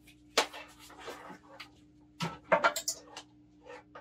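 A few separate knocks and clicks of the plastic Ninja blender being handled: its motor top being seated and its cord and plug being handled, with the motor not yet running.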